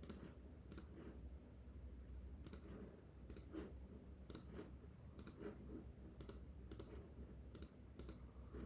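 Quiet clicking of a computer mouse button: about nine short, sharp clicks, mostly in pairs a little under a second apart, as an answer is selected and then the next question is opened.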